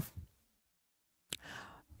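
Near silence, then a man's short intake of breath through the mouth, beginning with a small mouth click about a second and a half in.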